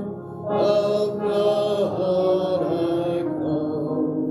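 A man singing a hymn unaccompanied, with long held notes. He pauses briefly between phrases just after the start and again near the end.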